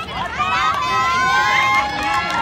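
Voices calling out, one of them drawn out into a long held call about halfway through.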